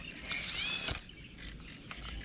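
Fly reel's ratchet drag buzzing as a hooked black carp pulls line off the spool: a high whirr that bends in pitch and lasts under a second, followed by scattered lighter clicks.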